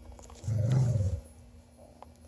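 A dog giving one low, rough growl lasting under a second during play-wrestling.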